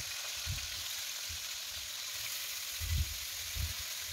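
Marinated chicken pieces sizzling as they shallow-fry in hot oil in a wok, a steady hiss with a few soft low thumps as more pieces are laid into the pan.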